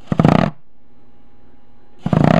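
Fingertips riffling quickly across the pleats of a CleanStream HEPA shop-vac cartridge filter, a brief papery rattle of many fast ticks lasting about half a second near the start. The pleats are flicked to shake loose fine drywall dust caught in the filter media.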